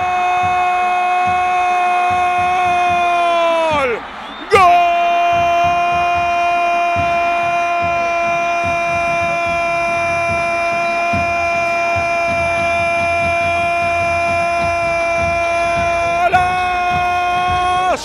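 Football commentator's drawn-out goal call: one 'gol' shouted and held on a single high pitch. It sags and breaks off as his breath runs out about four seconds in, then is taken up again after a quick breath and held for the rest of the time.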